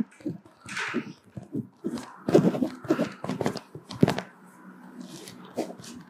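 Marker pen rubbing over a cotton T-shirt in short strokes as it is signed, with the shirt's fabric rustling, and a few brief murmured words.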